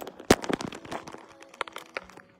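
Handling noise from a phone being turned around in the hand: a string of sharp clicks and knocks against the microphone, the loudest about a third of a second in.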